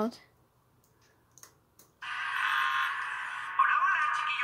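Three or four faint clicks in near quiet, then about halfway through, a video's soundtrack starts playing from a laptop's speakers: a steady, tone-rich sound with hiss, and a voice coming in near the end.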